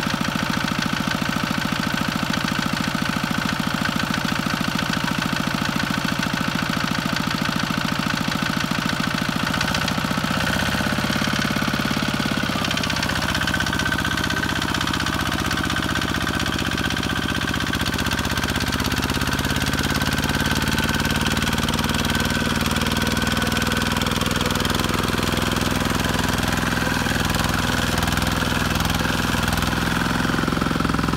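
Kubota two-wheel walking tractor's single-cylinder diesel engine running with a fast, even knock. About ten seconds in its note changes and wavers up and down as the tractor works through deep paddy mud on its cage wheels.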